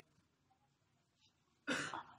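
Near silence with faint room tone, then a short cough from the man near the end.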